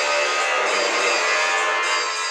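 Music: a dense, steady wash of sustained guitar tones.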